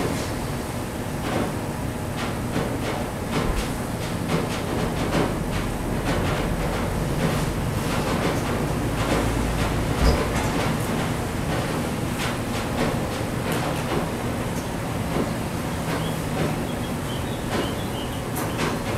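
A projected film's soundtrack playing into the room: a steady rumbling, clattering noise full of short clicks, with a heavier low rumble through the middle and a sharp knock about ten seconds in.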